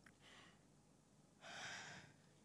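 A woman's breath into a close handheld microphone: a faint puff about a quarter second in, then a stronger breathy rush lasting about half a second near the end.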